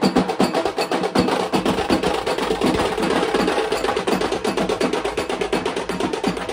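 Drums beaten in a fast, steady, continuous rhythm, like a drum roll.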